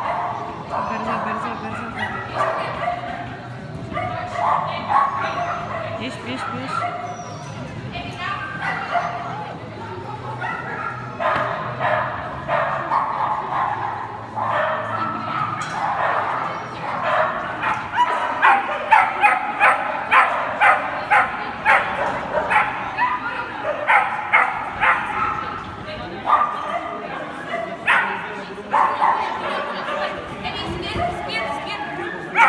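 A dog yipping and barking over and over, the barks coming thickest and loudest in the second half at about two a second.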